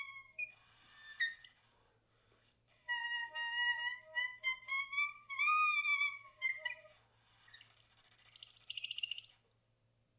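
Solo soprano saxophone: breathy air sounds with a sharp click about a second in, then a phrase of held, slightly bending notes from about three to seven seconds in, then more breath noise that turns into a short buzzing rattle around nine seconds in.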